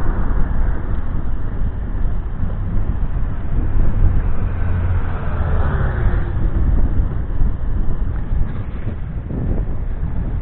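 Wind rushing over the microphone and a low road rumble from a camera riding along a cycle path. About halfway through, a passing vehicle is heard, its sound dropping in pitch as it goes by.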